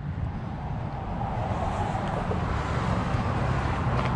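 Steady low rumble of a running car engine under a broad outdoor hiss that slowly grows louder.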